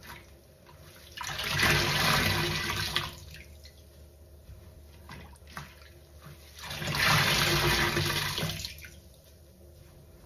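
A large wet sponge pressed and squeezed against a stainless steel sink bottom, water gushing and squelching out of it in two surges of about two seconds each, with soft squishes and drips between.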